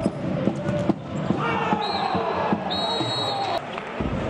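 Futsal ball being kicked and bouncing on an indoor court, a string of sharp hits, with players and bench shouting.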